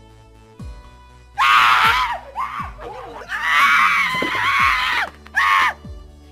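A man screaming in three long, high cries starting about a second and a half in, the middle one the longest, over background music.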